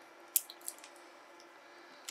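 A few light clicks and taps of needle-nose pliers on the metal ends and nickel strip of a pair of 18650 cells, the sharpest about a third of a second in, over a faint steady hum.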